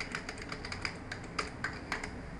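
Typing on a computer keyboard: a quick, irregular run of about a dozen keystrokes as a file name is entered.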